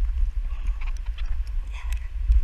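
Low rumble of wind and handling on a body-worn action camera's microphone, with irregular clicks and knocks as hands and a metal safety clip work along the ropes of a cargo net.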